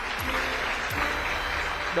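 Steady applause, with background music underneath.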